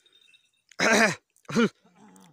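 A man shouting two short calls across the field, the first longer and falling in pitch, the second brief.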